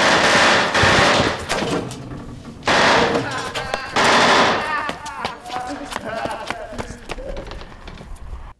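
Submachine-gun fire: three long, loud bursts, the first right at the start and the others about three and four seconds in. Scattered quieter shots follow, with a man yelling among them.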